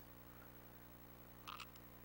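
Near silence: a faint steady electrical hum, with one faint brief sound about one and a half seconds in.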